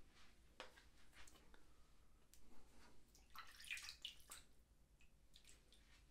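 Near silence: room tone with a few faint wet clicks and a short stretch of light scratching about three and a half seconds in.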